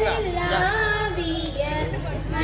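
A girl singing solo into a microphone through a stage PA, a slow melody of held, wavering notes that glide from one to the next, over a steady low hum.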